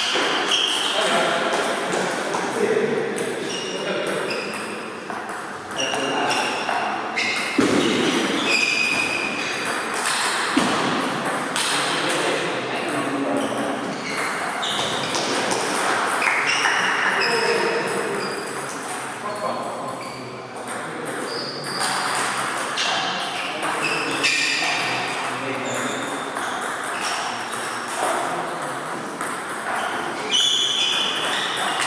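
Celluloid-type table tennis balls clicking off rubber paddles and the table top in quick rallies, the ticks echoing in a large hall, with people's voices in the background.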